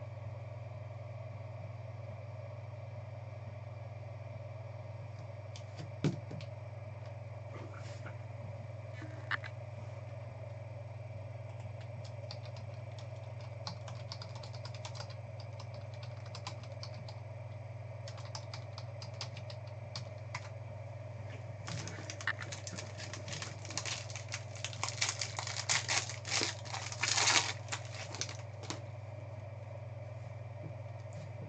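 Steady electrical hum. Scattered light clicks, then several seconds of dense crackling and clicking near the end, as foil trading-card pack wrappers and plastic card holders are handled on the table.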